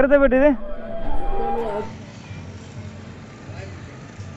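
A loud, drawn-out call with a wavering pitch lasts for the first second and a half or so. Then the sound drops to a quieter, steady rush of wind and water.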